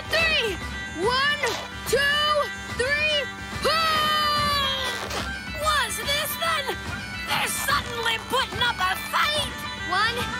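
Cartoon voices grunting and straining in short repeated rising-and-falling groans as the characters heave on a tug-of-war rope. Under them runs background music with a steady bagpipe-like drone.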